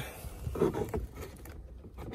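Faint handling noise: rustling and a few light clicks as the diagnostic interface cable is handled and plugged in, over a low steady rumble.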